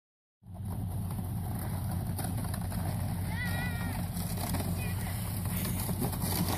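A child's distant, high wavering shout about halfway through, over a steady low rumble.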